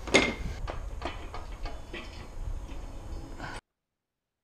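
A metal engine part, a round seal housing, set down with a sharp clank in a metal toolbox drawer among other removed engine parts, followed by lighter clicks and knocks of parts being handled. The sound cuts off abruptly near the end.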